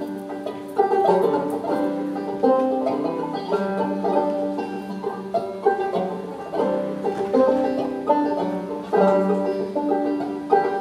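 Banjo played solo, picked notes in a steady rhythm: the instrumental introduction to a song, before the singing comes in.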